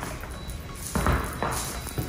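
Paint roller on a pole rolling over wet epoxy base coat with a really sticky sound, in strokes about every half second. The sticky sound is the sign that the epoxy is too thin in that spot and needs more product.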